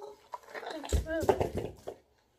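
A boy's wordless vocal sounds while he drinks from a plastic cup, with a low thump about a second in.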